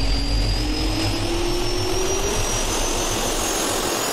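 Jet engine spool-up sound effect: a steady roar with a low rumble, under a whine that climbs slowly in pitch.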